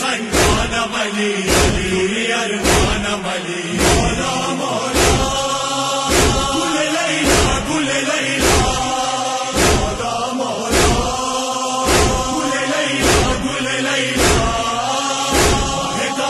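A group of men chanting a noha lament in unison, with a sharp chest-beating (matam) thud about once a second keeping the beat.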